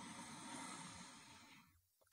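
A faint, slow inhale through the nose, part of a guided deep breath. It swells a little and fades out shortly before the end.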